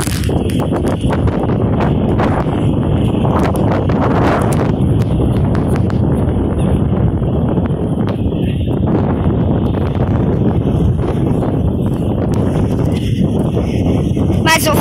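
Wind buffeting a phone's microphone: a loud, steady low rumble, with a few faint knocks.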